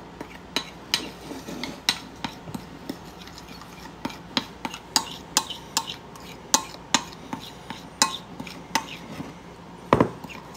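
A small spoon stirring instant coffee powder into hot water in a ceramic bowl, knocking and clinking against the bowl's sides in short irregular taps, about two or three a second.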